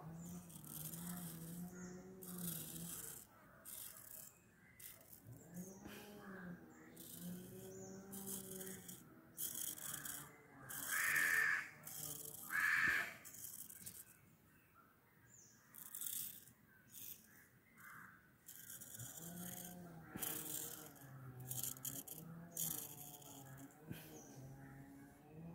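A razor blade scraping through hair in short, repeated strokes while a man hums a tune to himself in stretches. Two short, louder sounds stand out about halfway through.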